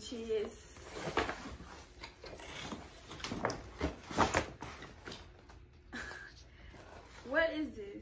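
Cardboard box being opened and handled: irregular scrapes, rustles and knocks of the cardboard flaps, the loudest about halfway through. A woman's voice is heard briefly at the start and again near the end.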